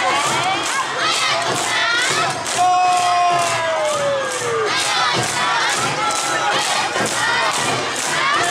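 Awa Odori dancers shouting their rhythmic calls in chorus, many voices overlapping, over a steady beat of about three strokes a second. A long drawn-out call falls in pitch about three seconds in.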